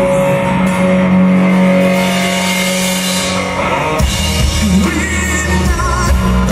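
Live rock band playing: electric and acoustic guitars, bass guitar and drum kit, loud and continuous, with a swell of cymbals around the middle and the bass dropping lower in the last couple of seconds.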